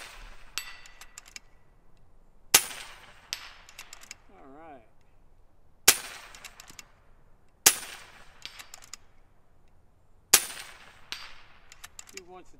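FX Impact M3 PCP air rifle with a .357 barrel firing four shots two to three seconds apart. Each sharp report is followed under a second later by a few fainter metallic clicks as the slugs strike the steel plates downrange.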